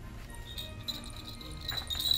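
Small jingle-bell earrings jingling faintly as the wearer shakes her head: a thin, high ringing that sets in about half a second in and grows stronger near the end.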